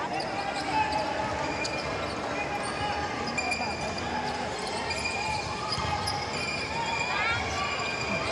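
Basketball dribbled on a hardwood court, with short sneaker squeaks as players move, over steady crowd chatter in a large gym.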